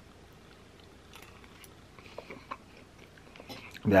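A person chewing a forkful of soft meatloaf with gravy: faint, irregular small clicks and wet mouth noises.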